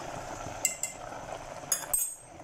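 A metal fork clinking against a metal saucepan, a couple of sharp ringing clinks a little past half a second in and more near the end, over the steady bubbling of noodle soup boiling on the stove.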